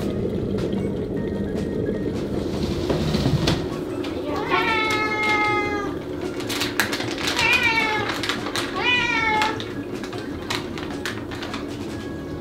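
A domestic cat meowing three times, each meow around a second long, asking for food as a bag of cat treats is handled. A steady low hum runs underneath.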